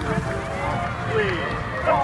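Indistinct voices of football players and coaches calling out, with no clear words, over steady background noise.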